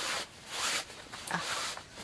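Fabric rustling as a cotton-backed half-width (hanhaba) obi is pulled and slid against itself while being tied: three soft swishes of cloth, sliding smoothly.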